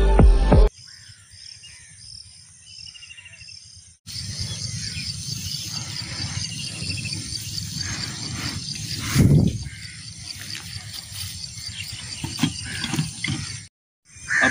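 Background music that cuts off under a second in, followed by rural outdoor ambience with a steady, high, rhythmic chirping and one loud thump about nine seconds in.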